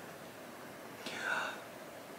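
A man's brief soft whisper or breathy murmur, about a second in, over low room tone.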